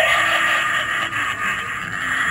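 Animated grim reaper Halloween decoration playing its harsh, hissing sound effect through its small built-in speaker, loud and steady.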